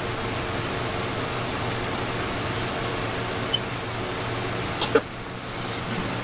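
Steady background noise with a low hum, and one brief sharp sound about five seconds in.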